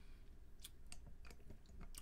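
Faint wet mouth clicks and lip smacks, about half a dozen in quick succession, from a person tasting a sip of brandy.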